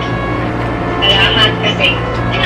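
Speech over a video call that the recogniser did not write down, with a steady low hum underneath.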